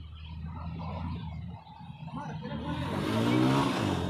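A car's engine and tyres on the street, growing louder over the last second or two as the vehicle approaches and passes, its engine note rising slightly.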